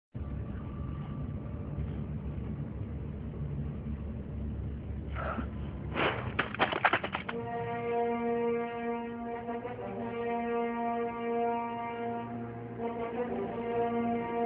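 Film soundtrack: a low rumble, then a quick run of sharp knocks about six seconds in, the loudest part. After that a sustained low brass-like drone of score music holds steady.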